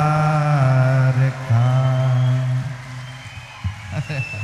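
A man chanting a long held note into a microphone, dropping lower in pitch about half a second in and fading out before three seconds.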